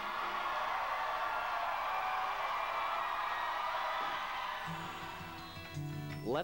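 School band music with brass, a sustained dense chord that fades away, then a different, softer background music with low steady notes comes in near the end.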